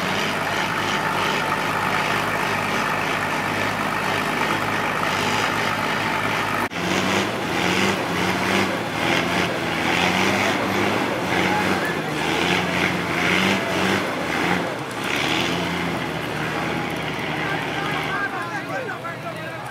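Diesel lorry engine running hard under load. After a sudden cut, a Nissan truck's engine revs up and down as it strains to drive out of loose dirt, with people's voices around it.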